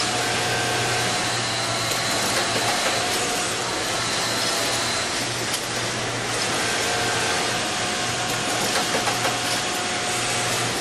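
Dürkopp Adler automated industrial sewing workstation running: a steady machine whir with a low hum that drops out briefly a few times.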